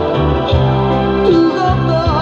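A Korean pop song played from a vinyl record, in a sustained instrumental passage with held keyboard chords over a steady bass.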